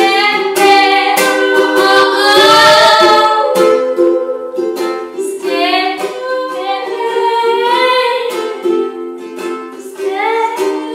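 A woman singing with her own strummed ukulele accompaniment, holding one long note about two seconds in.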